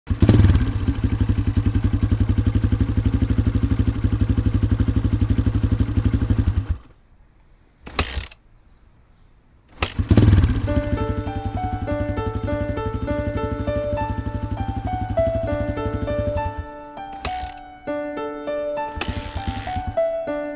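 Small motorcycle engine running with an even, rapid beat, then cutting out suddenly after about six and a half seconds. After a couple of clicks it starts again about ten seconds in and runs until it stops again near seventeen seconds. A music melody of stepped notes plays over it from about eleven seconds on.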